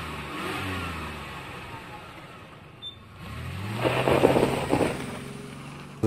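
Street traffic, with car engines passing. One car fades out within the first two seconds. Another engine rises in pitch from about three seconds in and is loudest near the end.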